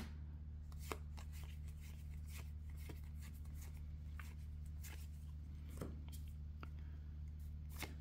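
Star Wars: Unlimited trading cards being flipped through by hand: scattered soft clicks and slides of card stock as each card is moved to the back of the pack. A steady low hum runs underneath.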